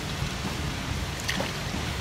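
Steady rushing noise of flowing river water, mixed with wind rumble on the microphone, with one faint tick just past halfway.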